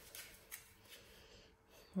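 Faint light clicks of a small plastic toy piece being handled against a plastic playset, with a slightly louder tap about half a second in.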